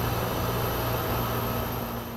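Airport ramp machinery running steadily: a constant low engine hum under an even hiss.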